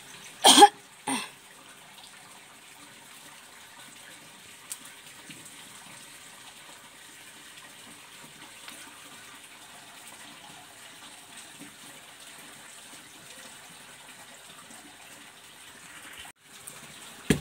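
A person coughs twice, loud and close, about half a second and a second in, followed by a steady faint hiss of background noise.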